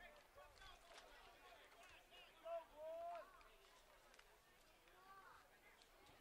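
Faint, distant voices calling out across an open field, with two short shouts about two and a half and three seconds in and another near the end.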